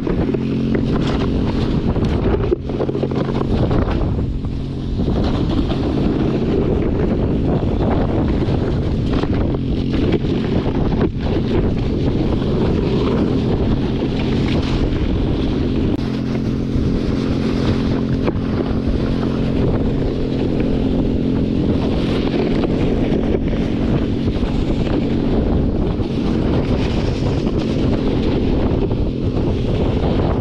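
Polaris Hammerhead GTS 150 go-kart's 150cc engine running steadily at speed while towing a snow kneeboard, with a loud rushing of wind on the microphone over it.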